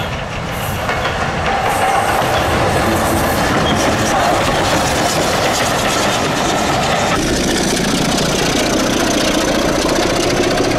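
Passing train with wheels clattering over the rail joints, hauled by a steam locomotive. About seven seconds in, the sound changes to a passing Class 25 diesel locomotive with its Sulzer engine running.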